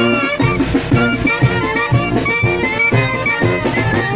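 Live wind band playing chinelo dance music: clarinets and brass carry the melody over a steady drum beat.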